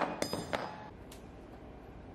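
Metal hand tools clinking: wrenches and a long steel router bit handled and set down on a wooden board while the bit and collet come out of the CNC's wood-router spindle. A few clinks with a brief metallic ring right at the start, then a single click about a second in.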